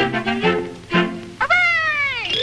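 Early-1930s cartoon orchestra score: a run of short, quick notes, then a loud note about one and a half seconds in that slides down in pitch.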